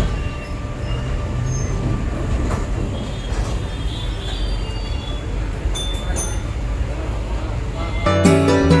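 Kolkata tram car running along its rails, heard from inside the car: a steady low rumble and rattle, with a few brief high squeaks and clicks from the wheels and body.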